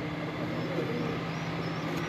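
Steady low machine hum over a background haze, with faint voices in the background.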